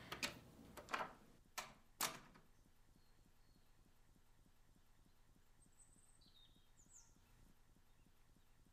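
Quiet sound-effect ambience: four sharp taps in the first two seconds, then a faint steady background with a few faint high chirps in the second half.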